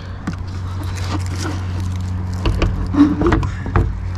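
Handling noise of a plastic solar flood light being held and positioned against a wall: scattered clicks and light knocks, with a few heavier bumps near the end, over a steady low hum.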